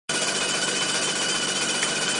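Jensen 51 replica's electrically heated live-steam engine running steadily with a rapid, even mechanical beat and a faint steady high whine beneath.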